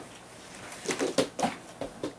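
Bedding rustling and a few short bumps as a person dives sideways off a bed under a comforter, with a burst of laughter, clustered about a second in.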